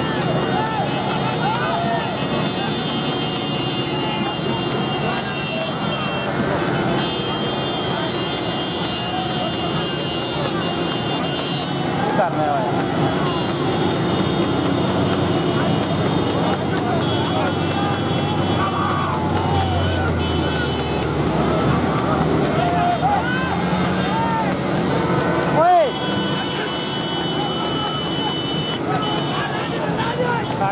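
Many motorcycle engines running together close by, mixed with men's shouting voices. There are stretches of steady high tones, and one brief loud burst about 26 seconds in.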